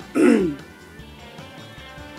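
A woman clearing her throat once, briefly, over faint background music.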